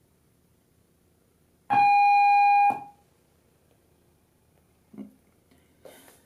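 A single electronic power-on beep from rack-mounted video gear as mains power reaches it: one steady, mid-pitched tone lasting about a second that starts and stops abruptly. A faint knock follows a couple of seconds later.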